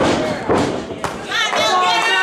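Wrestlers' bodies hitting the ring: three sharp thuds about half a second apart, with voices shouting over them.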